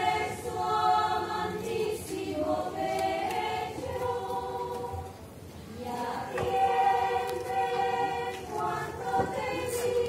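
A choir of women's voices singing unaccompanied in long held notes, with a brief dip in the singing about halfway through before the next phrase. This is typical of the Sisters of the Cross nuns singing to a procession float as it stops before their convent.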